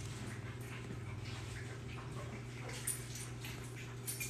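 Quiet room tone with a steady low electrical hum and a few faint, scattered sounds.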